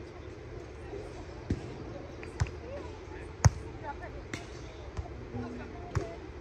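A volleyball being struck by players' hands and arms: a series of sharp hits about one a second, the loudest about three and a half seconds in.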